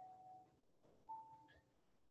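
Near silence: room tone, with two faint short tones, one at the start and one about a second in.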